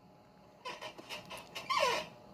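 A high-pitched squealing voice: faint squeaks starting under a second in, then a louder falling squeal near the end.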